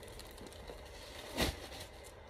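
Quiet room tone with one brief soft thump about one and a half seconds in.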